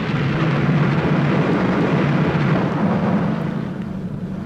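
An ocean-themed sound effect: a dense, steady rumbling rush of noise that fades toward the end.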